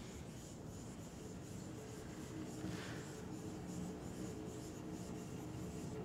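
Faint scratchy rubbing of a swing's rope against its wooden seat, with a soft brush of noise about halfway through.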